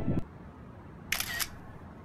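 Music cuts off just after the start, followed by a single iPhone camera shutter sound about a second in, a short click-like burst over faint outdoor background.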